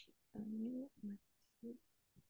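A person's soft voice: a drawn-out hum followed by two short murmurs, much quieter than the speech around it.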